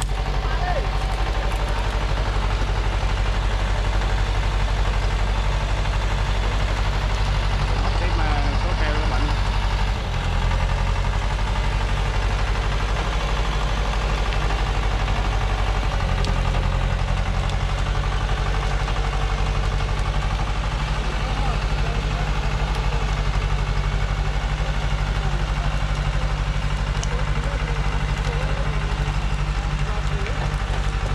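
Diesel engine of a Thaco truck overloaded with acacia logs, running steadily under the heavy load. Its note shifts after a brief dip about ten seconds in, and again a few seconds later.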